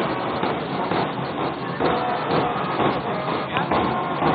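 Outdoor parade noise: a steady, even wash of sound with a school marching band's playing heard faintly under it.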